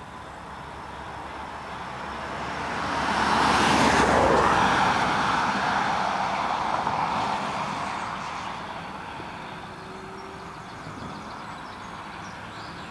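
A van passing close by, its engine and tyre noise on the road swelling to a peak about four seconds in and then fading as it drives away.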